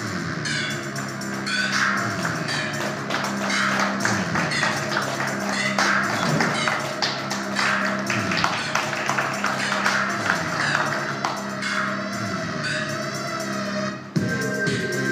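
Recorded music with a Latin, flamenco-like feel and sharp, tap-like percussive beats, played over a loudspeaker as accompaniment.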